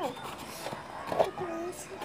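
Quiet voices with a few light clicks and knocks of plastic bowls being handled and passed from hand to hand.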